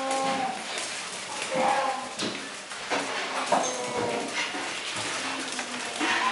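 Brown bear cubs calling, a few short pitched calls, mixed with sharp clicks and scuffles as they play on a tiled floor.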